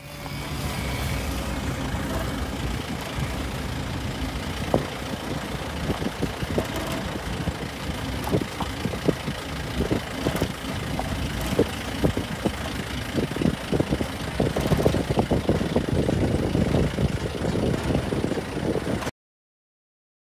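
Safari jeep driving on a rough dirt track: the engine runs under a steady low noise, with frequent knocks and rattles from the bodywork over bumps that grow busier in the second half. The sound cuts off suddenly near the end.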